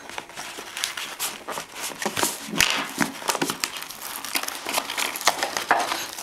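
A small knife slitting the packing tape along the seam of a cardboard shipping box: a rapid, irregular series of short scratchy strokes as the blade works along the lid.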